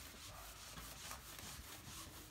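A handheld eraser wiping across a whiteboard, a faint, steady rubbing.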